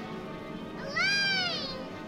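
A young girl's high-pitched call, drawn out over about a second, rising then falling in pitch. It comes about a second in, over background music.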